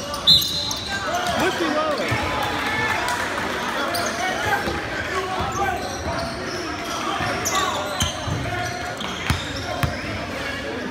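Spectators in a gym talking and calling out over one another during a basketball game, with an echo from the large hall. A few sharp knocks of a bouncing ball come through, one just after the start and two more near the end.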